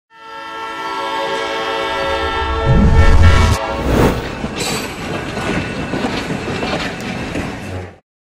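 A train whistle blows one long chord, with a heavy low rumble joining in near the end of it, then a rush of noise about four seconds in and the rattling clatter of a train running until the sound cuts off suddenly.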